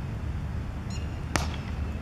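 Cricket bat striking the ball: a single sharp crack a little over a second in.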